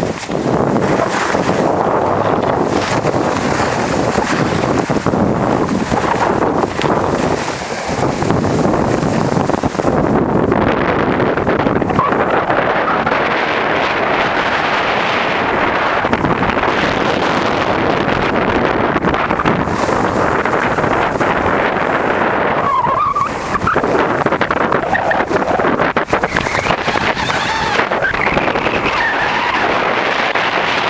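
Skis sliding and scraping over packed, groomed snow in a steady run, with wind rushing over the microphone.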